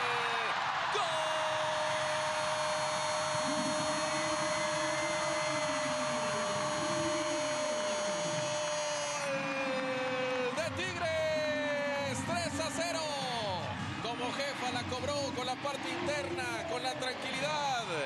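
Spanish-language football commentator's long goal cry, a single 'gol' held on one high pitch for about eight seconds, celebrating a penalty just scored. About halfway through, it breaks into shorter excited calls.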